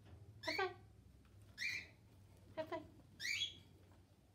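Guinea pig giving two short, high-pitched squeaks, one about a third of the way in and one near the end.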